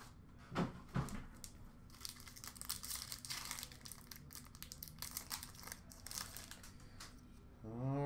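Hockey card pack wrapper being torn open and crinkled, with the cards inside being handled: faint, irregular crackling and rustling.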